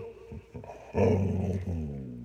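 Dog giving one low, drawn-out growly vocalization right up at a microphone, starting about a second in and trailing off as it falls in pitch.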